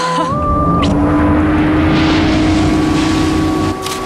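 Boat engine running steadily, with a rushing noise that swells toward the middle and cuts off abruptly near the end, over soft background music.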